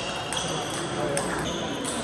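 Celluloid-type table tennis balls being struck in play: several sharp, light clicks of ball on bat and table, about half a second apart.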